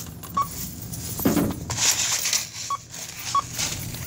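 Short electronic checkout beeps, each one brief single tone, three of them spread across the few seconds, over rustling and handling noise.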